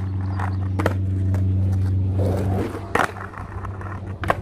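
Skateboard wheels rolling on concrete with a steady low rumble that stops about two and a half seconds in, then sharp clacks of the board striking the concrete ledge, the loudest near the end.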